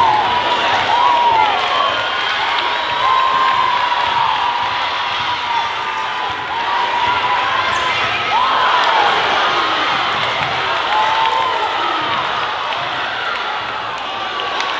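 A basketball being dribbled on a hardwood gym floor during play, with sneakers squeaking as players cut and the crowd in the gym cheering.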